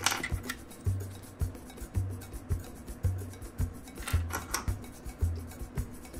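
Hard plastic parts of a small toy figure rubbing and clicking against each other as they are worked apart by hand. Background music with a soft low beat about once a second.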